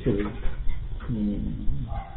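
Speech only: a man's voice drawing out a syllable, then a held, gliding hesitation sound in a slow pause between words.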